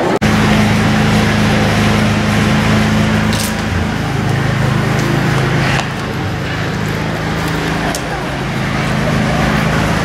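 An engine idling: a steady low hum under open-air noise, louder in the first half, with a few short, sharp clinks.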